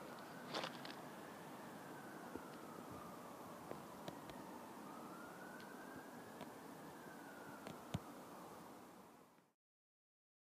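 A faint siren wailing, its pitch rising and falling slowly, about once every five seconds. A few light clicks sound over it, the sharpest near eight seconds in, and the sound cuts out just before the end.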